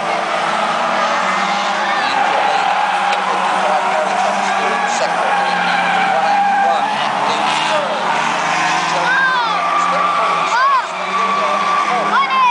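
Euro Rod race cars' engines running as they come through the bend, with short tyre squeals in the last few seconds.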